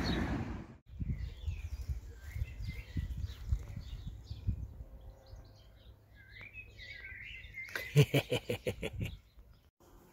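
Small birds chirping and singing, with a low rumble through the first few seconds. Near the end comes a rapid run of about eight loud claps or taps within a second, the loudest sound here.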